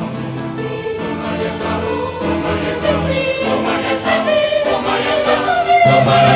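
Choir singing a Ghanaian choral anthem in several parts, holding sustained chords and growing louder toward the end.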